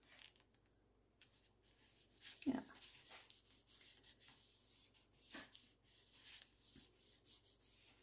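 Faint rubbing and rustling of paper being handled and pressed down by hand as it is glued in place, with a few small clicks.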